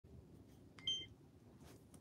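A single short electronic beep about a second in, just after a faint click, over low room noise.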